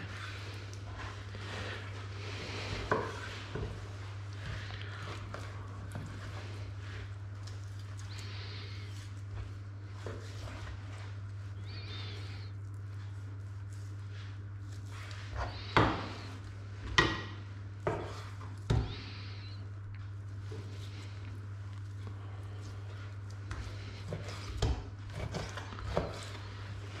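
A boning knife cutting meat on a cutting board, with a handful of short, sharp knocks from the knife and board, most of them bunched a little past the middle, over a steady low hum.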